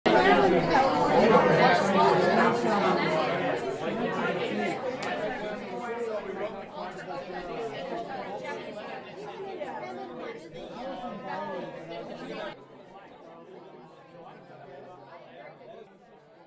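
Many voices chattering at once in a large room, no single speaker clear. The chatter is loudest at the start, fades gradually, and drops suddenly to a lower level about twelve seconds in.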